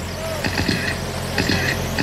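Electric radio-controlled sprint cars running laps on a paved oval, their motors whining briefly as they pass, twice, over a steady low hum.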